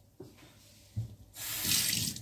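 A couple of light knocks, then a kitchen tap turned on about halfway through, with water running into the sink.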